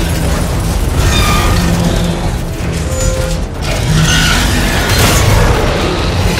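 Film action soundtrack: a dramatic orchestral score mixed with heavy booming impacts and mechanical sound effects of a giant robot battling a monster, with several loud hits.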